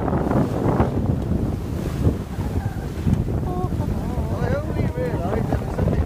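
Wind buffeting the microphone aboard a sailing yacht under sail, over the rush of the sea along the hull. The wind noise is steady and heavy throughout.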